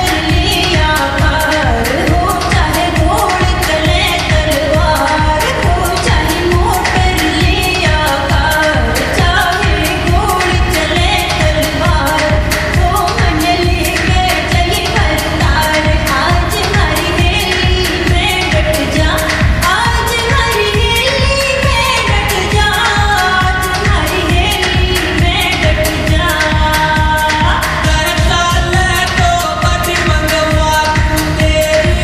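A Haryanvi pop song playing: singing and melody over a steady, driving beat.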